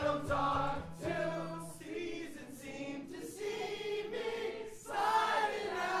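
A man sings loudly into a mic over a strummed acoustic guitar at a live show, with other voices singing along.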